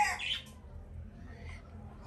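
The last moment of a rooster's crow, its note falling off, then a short higher call and quiet.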